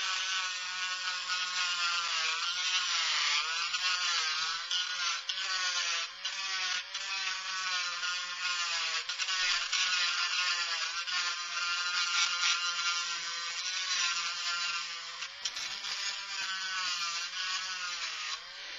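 Dremel Stylus cordless rotary tool running steadily, its bit grinding into the inside of a plastic model car part to thin the plastic for rust-through holes. The motor's whine wavers up and down in pitch as the bit bears on the plastic.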